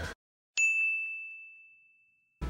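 A single bright ding, an editing sound effect for a title card: one high bell-like tone struck about half a second in, fading away over about a second.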